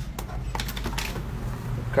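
A few light clicks and taps of small objects, cigarettes and a phone, being handled on a tabletop, over a steady low hum.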